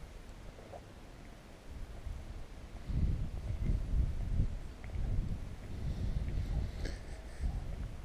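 Wind buffeting the moving camera's microphone: a low, gusty rumble that grows louder about three seconds in.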